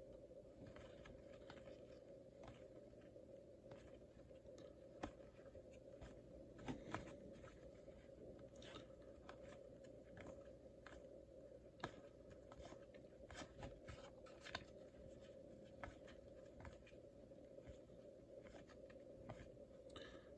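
Faint clicks and short rustles of baseball cards being slid one by one off a stack from hand to hand, scattered irregularly, over a low steady hum.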